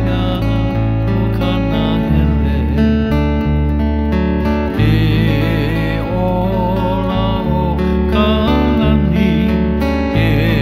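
Acoustic guitar and electric bass playing a tune together, the bass holding deep notes that change every second or two under a wavering guitar melody.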